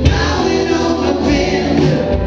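A rock band playing live, with several voices singing together over electric guitars, keyboard, bass and drums.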